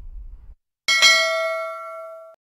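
A bright bell-like chime sound effect from a subscribe end-screen animation, striking suddenly about a second in and ringing on as it slowly fades. Just before it, a low room hum cuts off abruptly.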